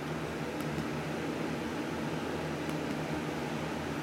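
Steady fan-like hum with an even hiss of room noise.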